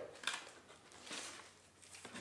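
Faint handling sounds of product packaging being lifted out of a cardboard box: a light click about a quarter second in and a short rustle about a second in.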